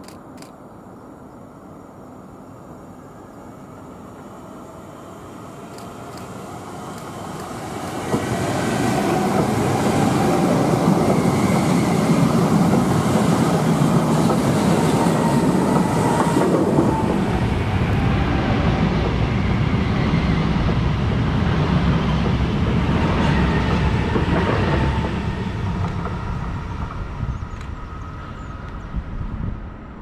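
A Trenitalia ETR521 'Rock' double-deck electric multiple unit rolls past close by. Its running noise builds over several seconds, stays loud for about a quarter of a minute, then fades as it moves away.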